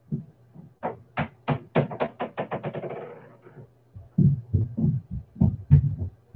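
A plastic ball dropped on the floor upstairs, bouncing with quicker and quicker, fading knocks until it settles, followed by several heavier low thuds.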